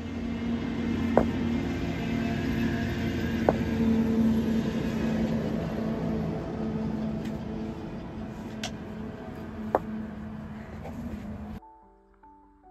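A steady low rumble with a sustained hum, and four sharp knocks scattered through it as field stones and a shovel strike each other while stones are set along a bed edge.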